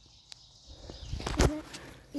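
Brief rustling and scuffing in dry leaf litter and clothing about a second in, with a few sharp crackles, after a single faint click; low outdoor background otherwise.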